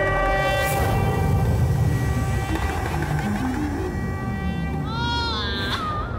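Suspenseful background score: held high tones over a low rumble, a short run of low stepped notes in the middle, and a bending, wavering tone near the end.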